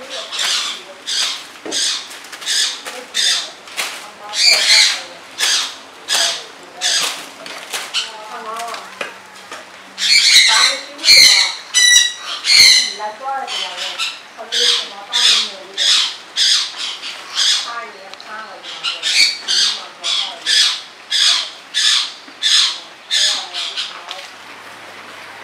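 A bird squawking over and over, about one to two loud, sharp calls a second, with the loudest calls in the middle.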